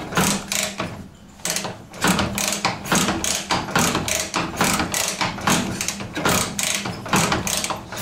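Rapid, regular mechanical clicking, about four clicks a second, from a Ural (Dnepr) sidecar motorcycle being worked over and over to pump fuel up to its newly fitted PZ30 carburetors before a first start. There is a brief lull about a second in.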